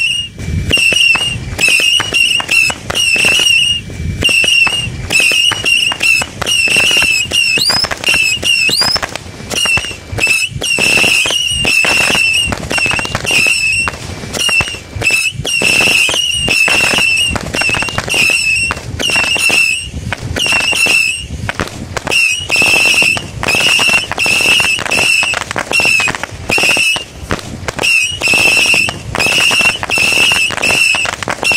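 A 100-shot missile-shooter firework cake firing shot after shot, about two a second. Each shot gives off a short whistle among sharp crackling pops, with a couple of rising whistles partway through.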